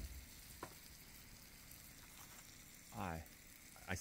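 Faint, steady sizzle of food frying on a propane camp stove, with a single light click a little over half a second in.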